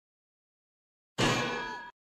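A single metallic clang sound effect about a second in, ringing with many tones and fading for most of a second before it cuts off abruptly.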